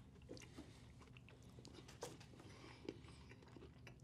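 Near silence with faint sounds of someone chewing a bite of cookie, and a few soft clicks, two of them a little sharper about two and three seconds in.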